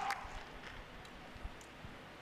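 Quiet background ambience: a faint steady hiss, with the tail end of a spoken word right at the start and two soft, low thumps in the second half.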